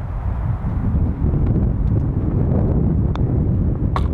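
Wind buffeting the microphone, a steady low rumble, with one sharp click about three seconds in as a putter strikes the golf ball on a short tap-in putt.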